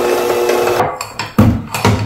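Electric hand mixer beating cream cheese frosting in a glass bowl, a steady motor whine that cuts off under a second in, followed by a few low clunks.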